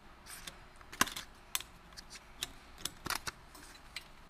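Hands fitting a split-disc PAS magnet ring and its adapter plate onto a bicycle chainring, making faint, sharp clicks and taps, about half a dozen, as the parts are lined up over the chainring bolts.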